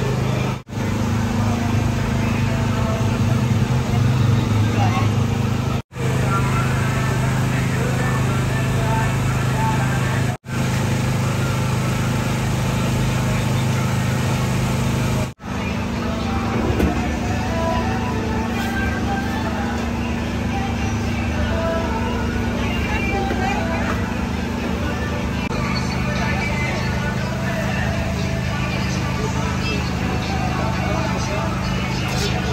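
Busy street-stall ambience: a steady low hum under scattered background voices. The sound drops out briefly four times in the first half.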